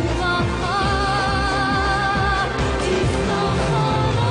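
Hebrew pop song: a female lead vocal holds one long note with vibrato from about a second in until past the middle, over the band's accompaniment.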